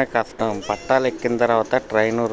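A person's voice.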